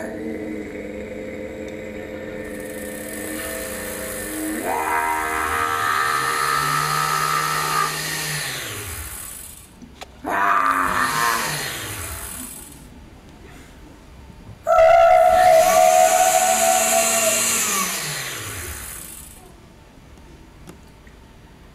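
A voice-controlled blender spinning up and winding down in response to a woman's motor-like vocal noises, in three bouts with a short one in the middle. The motor's pitch rises, holds and falls with her voice. It is heard as a video played back in a hall.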